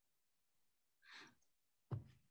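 Near silence over a video call, with one faint exhale from a person about a second in and a sudden sound starting just at the end.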